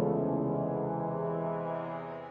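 Outro music: a held brass chord of several sustained notes, slowly fading.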